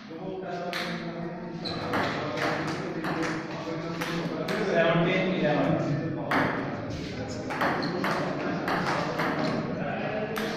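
Table tennis rally: the ball clicking off the paddles and the table in quick, repeated hits.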